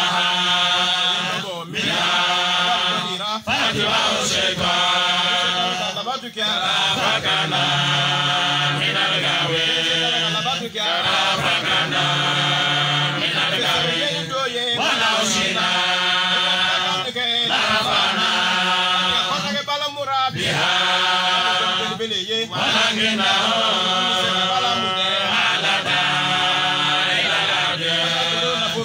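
Men's voices chanting an Islamic devotional chant through microphones, in repeated phrases of two to three seconds with short breaks between them.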